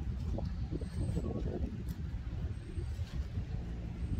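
Wind buffeting the microphone outdoors, a fluttering low rumble that rises and falls unevenly.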